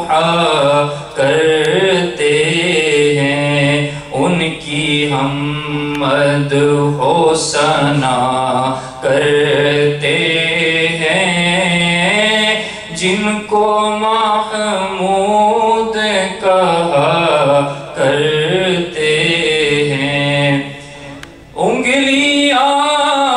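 A man's voice chanting unaccompanied into a microphone, in long held, ornamented phrases with short breaths between them and a longer pause near the end.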